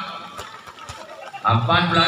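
A gap in a man's match commentary: faint background noise with two faint knocks, then his voice resumes about one and a half seconds in.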